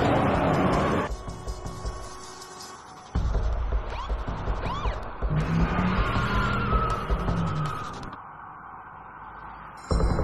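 Action film soundtrack: music over car engine and tyre noise. It is loud in the first second, drops, comes back loud with a heavy low end about three seconds in with a few brief squeals, and fades near the end.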